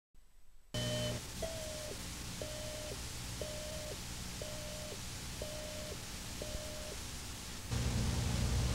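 An electronic beep tone on an old videotape soundtrack: a steady mid-pitched beep about half a second long, repeated once a second seven times, over steady tape hiss and a low hum. Just before the end the background gets louder.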